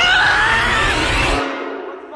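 A loud, long yell that glides up and then holds, over a noisy rush with a deep rumble that cuts off suddenly about a second and a half in.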